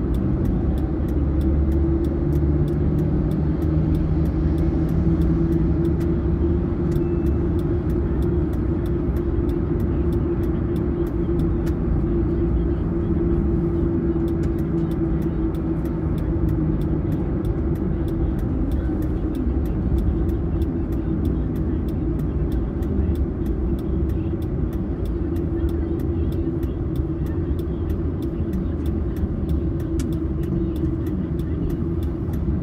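A car's engine and tyre noise heard from inside the cabin while driving steadily on a city road: a constant low rumble with a steady droning hum.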